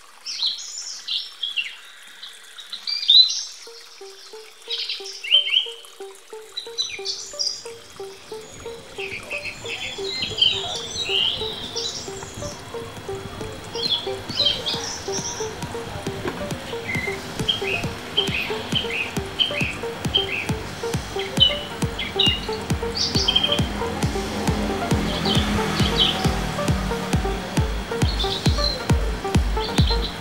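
Small birds chirping and trilling in quick, scattered calls. Background music comes in with a repeating figure about four seconds in, adds a steady beat a few seconds later and grows louder, while the bird calls thin out.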